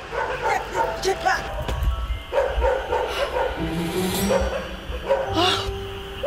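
A dog barking, with background music under it.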